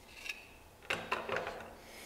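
Molded plastic ECU case parts handled and rubbed against each other, giving a few light clicks and scrapes, most of them about a second in.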